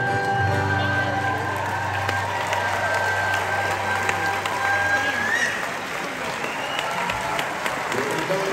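Concert audience applauding and cheering while the band's held notes ring out beneath.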